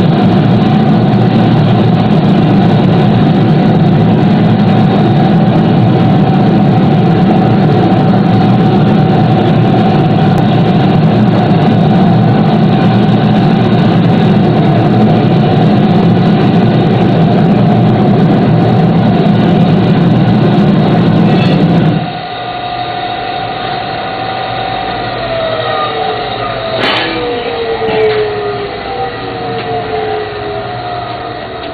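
Gas-fired crucible furnace for bronze casting running loudly and steadily, its burner and blower giving a held tone over a dense rumble. After a sudden drop in level, several whines fall in pitch and there is one sharp knock near the end.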